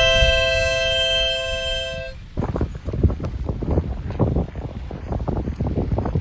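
Harmonica holding a long final chord that fades a little and stops about two seconds in. After that, gusty wind rumbles and buffets the microphone.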